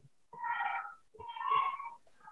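Two short animal calls, each under a second long, with a brief pause between them.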